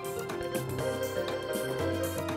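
Instrumental TV theme music for the programme's title sequence, with held chords and a low bass note coming in near the end.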